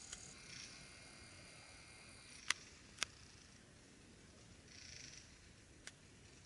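Quiet woodland air with a few short, sharp clicks, two close together around the middle, and a couple of soft, brief rustles.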